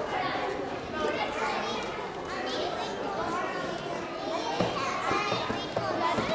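Audience chatter in a large hall: many people, children among them, talking at once.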